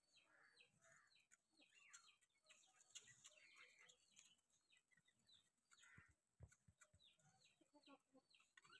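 Faint bird chirping: a quick, continual series of short falling chirps, several a second, with soft clucks among them.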